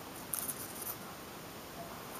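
Faint scratchy handling noise of fingers gripping and turning a small wooden fingerboard deck with sandpaper grip, a few brief scrapes in the first second.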